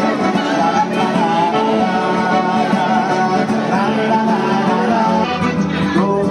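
Street musicians playing a lively folk dance tune on accordion and a stringed instrument, the music running without a break.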